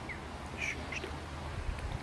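Three short, faint duck calls in the first second, over a low steady background rumble.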